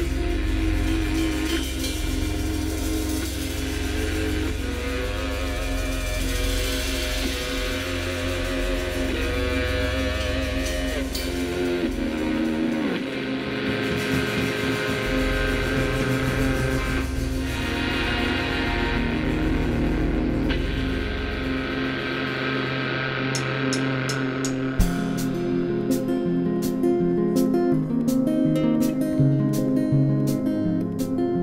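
A live band playing an instrumental introduction on acoustic guitars, keyboard and drums, with no singing. About two-thirds of the way in, the deep bass drops away, leaving a picked guitar figure over regular cymbal ticks.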